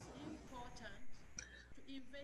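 Faint speech: a woman talking quietly over a video call, low in the mix.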